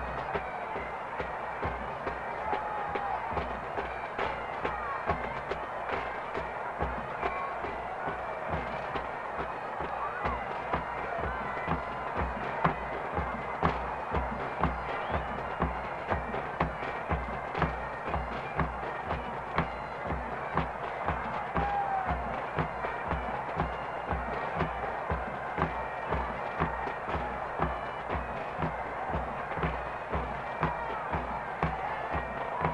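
Scottish pipe band playing: bagpipes over a steady bass-drum beat.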